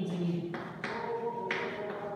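Chalk writing on a blackboard: four sharp taps, each followed by a short scratchy stroke, as the chalk strikes and drags across the board.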